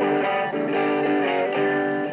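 Electric guitar strumming a steady run of chords, the chords changing several times a second.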